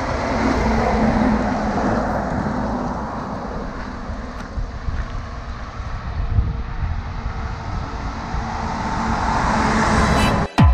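Motor vehicle noise: a steady rush with a low hum in the first few seconds, easing off in the middle and swelling again near the end.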